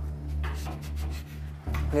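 A faint light rubbing on wood as a syringe is slowly set down on the corner of a wooden shelf, over a low steady drone of background music.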